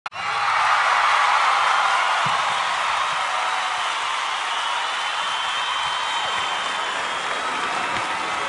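Audience applauding and cheering, a dense steady wash of clapping that eases off slightly over the seconds.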